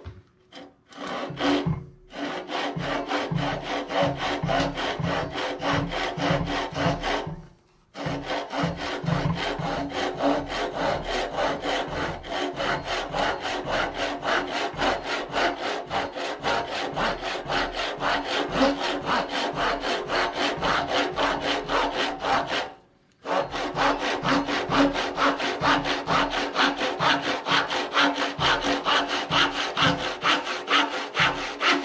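Japanese-style pull saw cutting through a wooden ax handle blank with quick, even strokes, stopping briefly twice.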